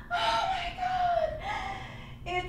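A woman's wordless, high-pitched whimpering cries of awe, two of them, the first long and dropping in pitch at its end: a comic imitation of overwhelmed, near-sobbing rapture.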